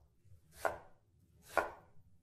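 Chef's knife chopping through an onion onto a wooden cutting board, two strokes about a second apart.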